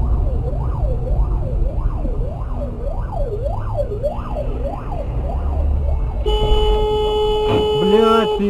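Emergency-vehicle siren in a fast up-and-down yelp, about two sweeps a second, over low vehicle rumble. About six seconds in it gives way to a steady held tone.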